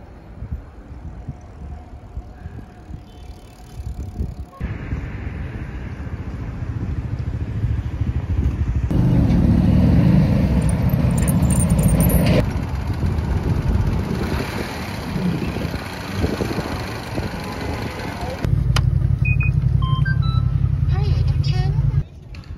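Outdoor city sound from a run of short clips: traffic on a wide road and heavy wind buffeting the phone microphone as a deep rumble. The sound changes abruptly several times where the clips cut, loudest in the middle and near the end.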